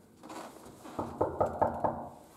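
Knuckles knocking on an apartment door: a quick run of about five knocks, roughly five a second, about a second in.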